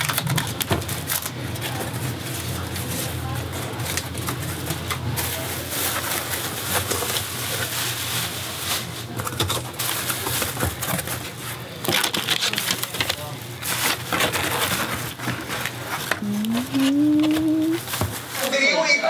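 Hands rummaging in a cardboard box of plastic-wrapped toiletries: continuous crinkling and rustling of plastic and cardboard with small clicks and knocks, over a steady low hum.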